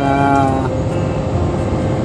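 Steady low rumble of a vehicle's engine heard inside the cabin. A drawn-out spoken hesitation fills the first half-second or so.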